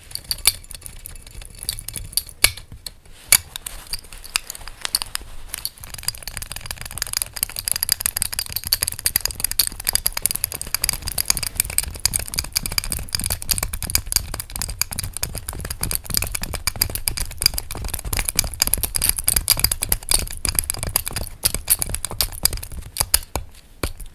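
Fingernails tapping and scratching on a metal belt buckle with a raised rose centrepiece, close to the microphone: a quick, continuous run of small clicks and scrapes. A steadier scratching joins in about six seconds in.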